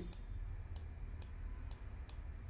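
A few sharp computer mouse clicks over a steady low hum.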